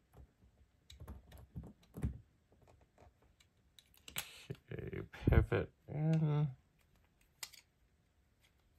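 Small sharp clicks and taps of a folding knife's metal parts and a small screwdriver being handled and fitted during reassembly, with one louder knock about five seconds in. A breathy exhale and a short hummed grunt of effort come just before and after the knock.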